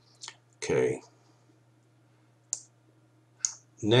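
A few short, sharp clicks and one louder breath-like noise close to the microphone a little under a second in, over a low steady hum. Speech starts right at the end.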